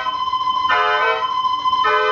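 Dutch street organ (pierement) playing a tune on its pipes. One high note is held steady while the chords beneath it change twice.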